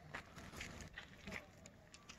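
Near silence: quiet outdoor ambience with a few faint, soft clicks and rustles.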